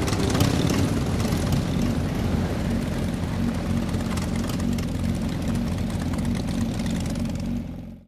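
Motorbike engines running steadily as the bikes ride along, fading out near the end.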